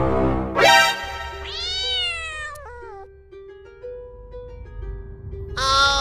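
A drawn-out cat meow about a second and a half in, ending in a short falling slide, over background music. Held music notes follow, and a second meow begins near the end.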